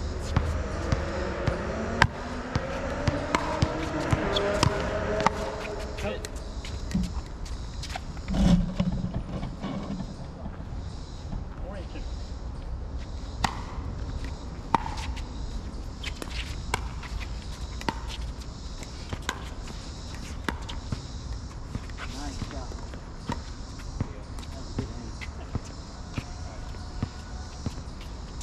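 Pickleball paddles hitting the plastic ball: sharp pops at irregular intervals through a rally. Voices talk over the first few seconds, and there is a dull thump about eight seconds in.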